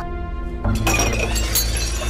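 Something breakable shattering about two-thirds of a second in, thrown down in a rage, with a bright ringing of scattering pieces for about a second, over background music.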